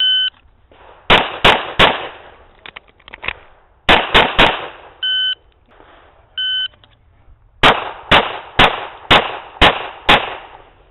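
Glock 35 pistol in .40 S&W fired in fast strings, each string started by a short electronic shot-timer beep. A beep, then three quick shots about a second in, three more near four seconds in, two more beeps, then five shots about half a second apart near the end.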